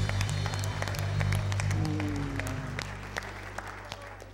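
Congregation applauding over a worship band's held final chord, its low bass note ringing on and fading away. The clapping thins out toward the end.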